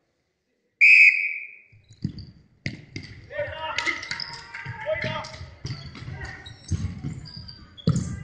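A referee's whistle blows once, loud, about a second in, to restart the futsal match. Then the ball is kicked and thuds on the wooden floor of the sports hall again and again, with players calling out, all echoing in the large hall.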